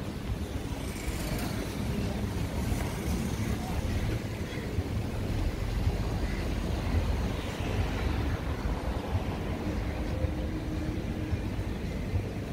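City street ambience: road traffic passing on a nearby road, heard as a steady low rumble and hum of engines and tyres.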